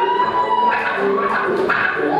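Live rock band music on stage, with electric guitars sounding sustained notes and one long held tone.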